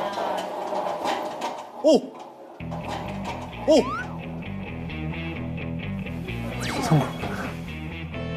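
Edited background music with a steady beat comes in about two and a half seconds in, with short exclaimed voice sounds that slide up and down in pitch three times.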